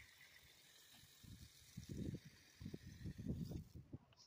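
Faint hiss of water spraying from a garden hose nozzle onto potted plants, fading out in the first couple of seconds, then a run of soft, irregular low thumps.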